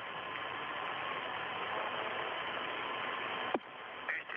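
Steady hiss of an open radio voice channel with no one speaking. Near the end it breaks off with a click and a quick falling tone.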